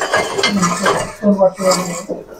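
Metal objects clattering and scraping as tools and scrap under a rusty workshop shelf are moved about by hand.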